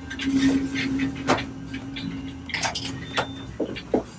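Steady low hum inside a moving elevator car, with a few sharp clicks and knocks and two brief high beeps.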